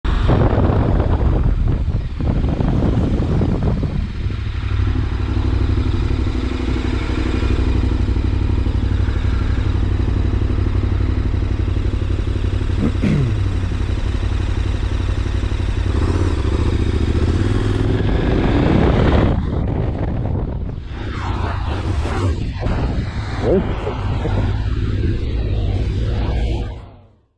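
A motorcycle being ridden on a wet road, heard from a camera on the bike: a steady engine drone under wind and tyre noise. In the last several seconds the steady drone breaks up into a more uneven, broken sound.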